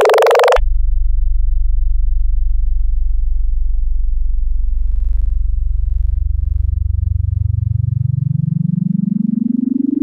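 Playback of synthesized wavetable audio files, one after another. A bright, buzzy tone rising in pitch cuts off about half a second in. A low buzzing tone from a windowed sine/arcsine spiral wavetable follows, and over the second half a tone in it glides steadily upward.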